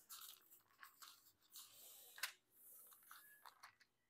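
Near silence: faint rustling of Bible pages being handled, with one soft click a little over two seconds in.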